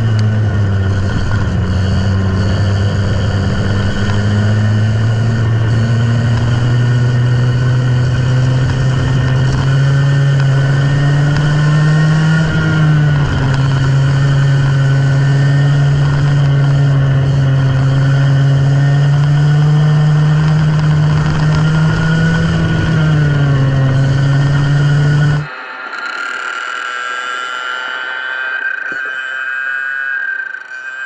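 Go-kart engine heard from on board, running hard with its pitch falling and rising as the kart slows for corners and speeds up again. About 25 seconds in, the sound cuts off abruptly to a quieter, higher-pitched engine whine.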